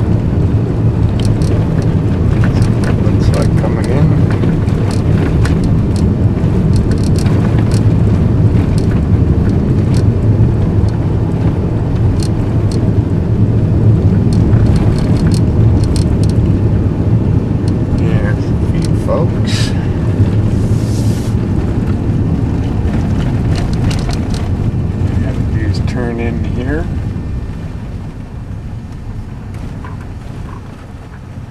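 Vehicle driving along a road, heard from inside: a steady low drone of engine and tyre noise with scattered clicks and rattles, growing quieter near the end.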